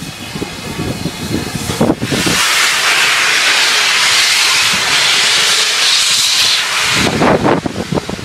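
BR A1 class 4-6-2 steam locomotive 60163 Tornado passing close at low speed. About two seconds of rumbling chuffs give way to a loud, steady hiss of steam from its open cylinder drain cocks for about four seconds, and the chuffing returns near the end.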